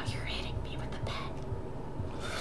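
Soft whispered speech, with a low steady hum under it.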